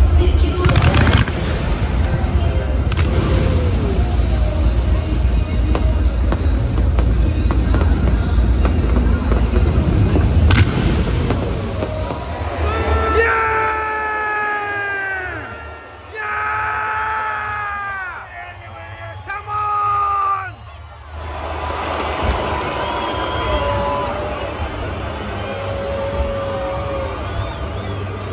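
Pre-match stadium show: loud crowd noise and bass-heavy PA music, with a couple of sharp bangs from pyrotechnics. About halfway through, a run of long held notes takes over, each sagging in pitch as it ends, before the crowd and music settle back to a lower level.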